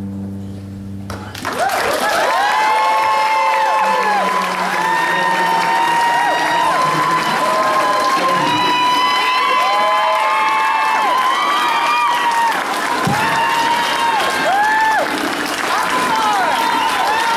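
An audience applauding and cheering loudly, with many high whistles and whoops, breaking out about a second and a half in, just as the last sung note and guitar chord of the solo acoustic song die away.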